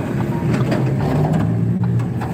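Steady engine hum and road noise heard from inside the cabin of a moving car.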